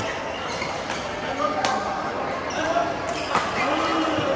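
Badminton play in a large echoing hall: several sharp racket strikes on the shuttlecock, the loudest about one and a half seconds in and again near three and a half seconds, with people's voices in the background.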